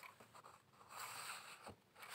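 Pages of a paperback textbook being turned by hand: a soft rustle of paper, with a small tap near the end.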